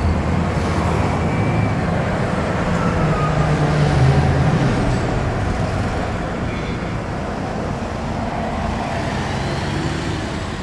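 Car engine and road-traffic noise heard from inside a car's cabin in city traffic. A low engine drone swells about four seconds in, then eases.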